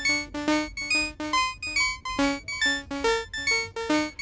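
Repeating step sequence of short synthesizer notes, about three a second, from a Baby-8 sequencer playing a Eurorack oscillator through an envelope-shaped VCA, with delay echoes trailing each note. The pitch of one step rises noticeably in the last second as its pitch knob is turned.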